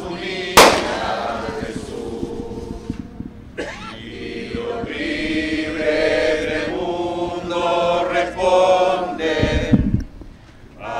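A group of people singing a song together, slow and sustained, with a single sharp crack about half a second in.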